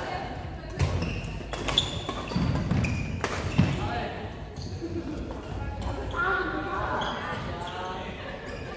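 Badminton rackets striking a shuttlecock in a rally, sharp cracks about a second apart in the first half, echoing in a large sports hall.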